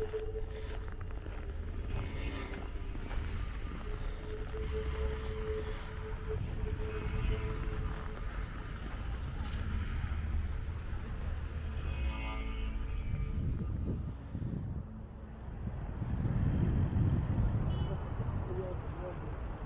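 City street ambience in winter: a steady low rumble of road traffic that swells louder near the end, with brief snatches of passers-by's voices now and then.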